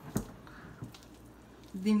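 Hands kneading pandesal dough in a glass bowl: soft squishing as the dough is pressed and folded, with a sharp knock just after the start and a fainter one near the middle. A voice starts speaking near the end.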